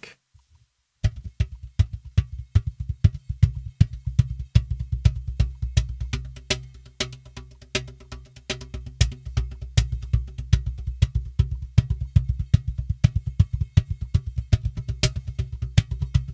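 Luna cajon played by hand with its snare wires disengaged: after about a second, a fast, continuous run of deep bass tones and sharper slaps struck in different spots on the wooden front head, with no snare buzz. Close-miked with a kick-drum microphone, so the low end is strong.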